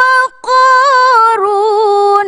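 A woman's melodic Quran recitation in tilawah style: a long held high note, a quick breath, then a wavering, ornamented phrase that steps down about halfway in to a lower held note.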